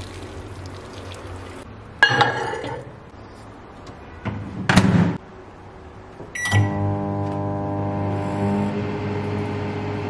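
Bennett Read microwave oven being loaded and started: a ceramic bowl clatters onto the turntable about two seconds in, the door shuts with a knock near the middle, a keypad beep sounds, then the oven runs with a steady electrical hum.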